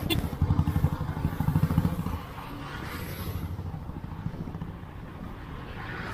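Motorcycle engine pulling as the bike accelerates, its exhaust pulses loudest for the first two seconds, then settling to a steadier, quieter run.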